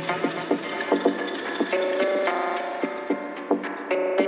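Live electronic music: sharp percussive clicks at an uneven pace, with a short phrase of pitched synth notes in the middle and no deep bass drum.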